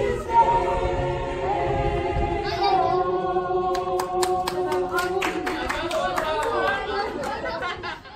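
Mixed a cappella choir holding a long final chord, which ends about three-quarters of the way through. Scattered handclaps start about halfway, and voices chatter near the end.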